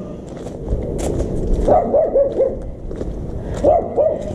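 A dog barking: four quick barks in a row about halfway through and one more near the end, over a low rumble and footsteps on gravel.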